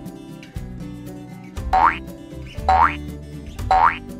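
Light background music with three short, rising cartoon sound effects about a second apart, each sweeping quickly upward in pitch; they tick off a quiz countdown.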